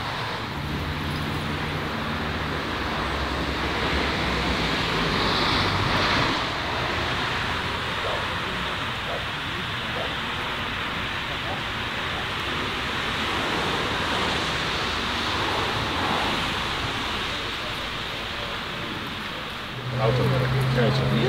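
Steady outdoor wind noise with faint background voices.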